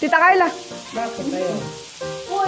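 Pork belly sizzling on a tabletop grill, a steady hiss under a person's voice, loudest in the first half second, and background music.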